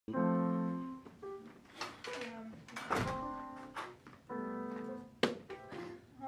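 Digital piano playing held chords in short phrases, with a sharp thud about three seconds in and another about five seconds in.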